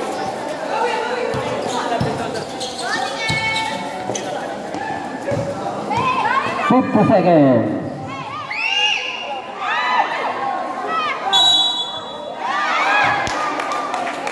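Basketball being dribbled and players' shoes on a concrete court, with spectators shouting and calling out, loudest in the second half. A brief high whistle sounds about eleven seconds in.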